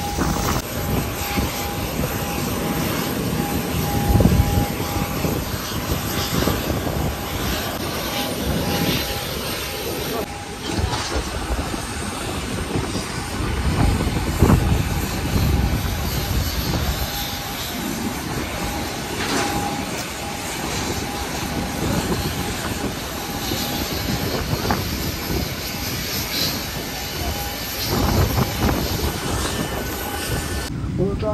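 Jet airliner noise on an airport apron: a continuous loud rush with a thin steady whine held underneath, and a few heavier low rumbles about four seconds in, midway and near the end.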